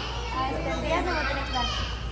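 Indistinct voices and children's chatter in a restaurant dining room, over a low steady hum.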